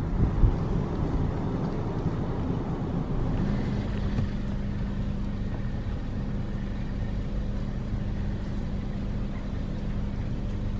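Car running along a road, heard from inside the cabin: steady low engine and tyre rumble, with gusts of wind on the microphone in the first second. A steady low hum sets in about three and a half seconds in.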